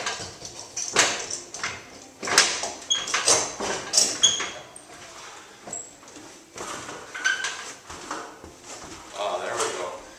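Clicks and knocks of bar clamps being set and tightened to hold a steam-bent wooden rub rail against a boat hull, busiest from about two to four and a half seconds in, with a few brief squeaks.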